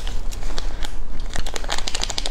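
A crinkly plastic seasoning packet handled in gloved hands, giving a dense run of crackles that grows busier about a second and a half in.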